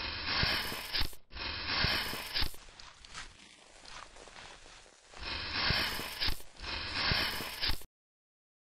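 Scalpel-scraping sound effect laid over the animation: four scraping strokes of about a second each, in two pairs, with a faint scratchy stretch between the pairs.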